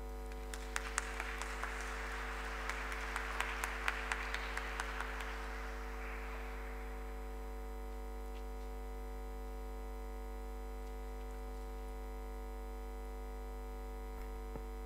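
Audience applauding for about six seconds after a speech, then fading away. A steady electrical mains hum from the sound system runs underneath.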